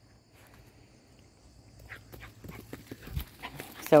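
Crunching and crackling on dry twigs and dirt, footsteps and movement over the ground, starting about halfway and growing busier, with one soft thump.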